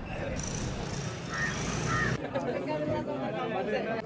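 Background chatter of a crowd's voices, with a low steady noise underneath that drops away about two seconds in.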